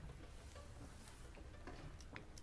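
Near silence: the hall's low room hum, with a few faint clicks late on as the string players settle their instruments to play.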